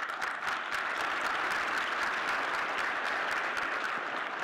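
Audience applauding steadily, a dense patter of many hands clapping.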